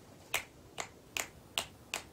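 Five sharp, evenly spaced clicks, about two and a half a second, over a quiet room.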